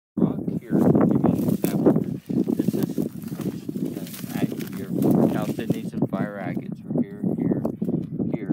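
A man talking, his words not made out.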